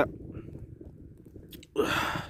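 Faint low rustling, then near the end a short, loud breath close to the microphone, a sharp gasp-like rush of air.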